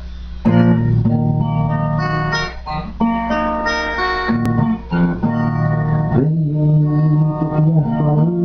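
Acoustic guitar playing an instrumental introduction to a song, the notes starting about half a second in. A low steady hum sits underneath.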